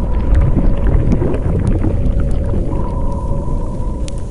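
Logo intro sound effect: a loud, deep rumble with scattered crackles and two held tones over it, slowly fading.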